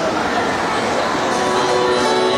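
Instrumental backing track coming in over the PA about a second and a half in, with steady held chords, over a constant wash of crowd noise.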